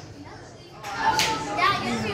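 A brief lull, then people's voices chattering, children among them, from about a second in.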